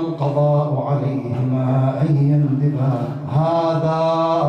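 A man's voice chanting a melodic religious recitation into a microphone, with long held, wavering notes.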